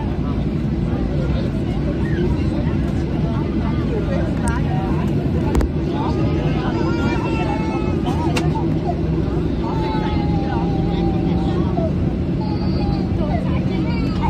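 Airliner cabin noise while taxiing after landing: a steady low rumble of the jet engines and the roll, with passengers chatting in the background. A single sharp click sounds about a third of the way through.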